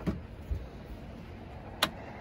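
Campervan slide-out table being fitted onto its mounting rail: a low thud about half a second in, then a sharp click near the end as it seats in place.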